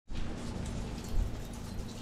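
Small hail falling and pattering on a wooden deck, a steady, even hiss.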